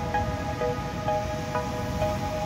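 Background music: sustained electronic-sounding notes in a slow melody, changing about twice a second over a steady low bed.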